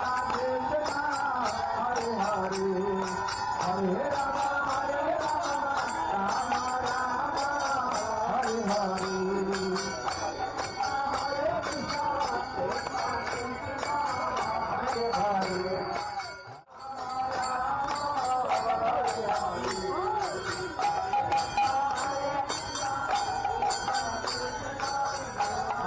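Live Assamese Naam Kirtan devotional music: harmonium and chanting voices over a khol barrel drum and steadily clashing hand cymbals. The sound drops out briefly about two-thirds of the way through.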